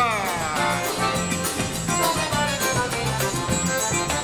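Live forró band playing an instrumental passage: piano accordion leading over zabumba bass drum, drum kit and electric guitars, with a short falling vocal cry at the very start.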